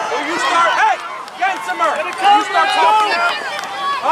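Several high-pitched voices shouting and calling over one another without clear words, as youth soccer players and sideline spectators yell during play.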